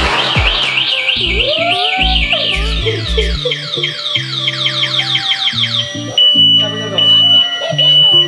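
Background music with a steady bass line, overlaid with an electronic siren-like effect. A fast warbling high tone turns into a run of falling sweeps, then gives way to a steady beeping alarm tone for the last two seconds. A short hissing burst at the very start comes as a handheld confetti popper goes off.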